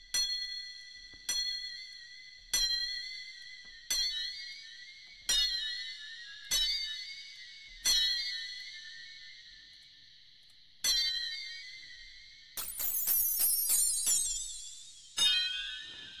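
UVI Falcon granular sampler playing a bell-like metallic tone: about eight evenly spaced struck notes, each ringing out and fading, then after a pause a dense scatter of rapid high grains lasting a couple of seconds, followed by one more struck note near the end.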